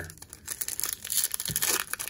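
Foil wrapper of a Topps baseball card pack being torn open and crinkled by hand: a fast, irregular run of crackles.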